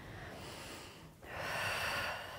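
A woman breathing audibly with the effort of a seated strap-rowing exercise on a Pilates reformer: two breaths, the second louder, starting a little over a second in.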